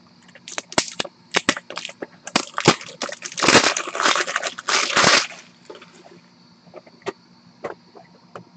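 Trading cards and their plastic packaging being handled: a run of sharp crackles and clicks, growing into a dense crinkling for about two seconds before it stops.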